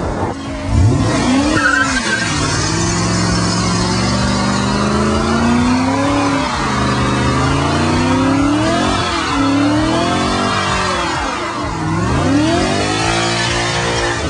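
BMW M5 engine revving up and down again and again during a burnout, its rear tyres spinning and hissing on the pavement.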